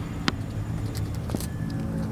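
Crayon rubbing on a coloring book page: soft scratching with two sharp ticks, over a steady low hum.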